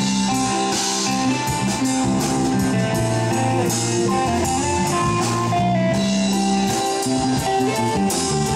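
Live rock band playing an instrumental passage with no singing: electric guitar over keyboard and drum kit, with steady cymbal strokes.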